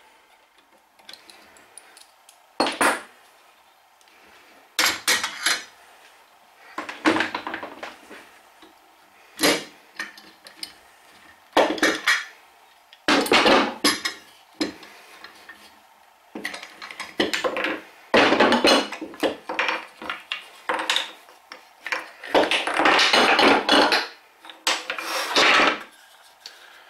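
Steel G-clamps being handled and set down on a wooden workbench: irregular clanks, rattles and knocks of metal on wood in a dozen or so separate bursts.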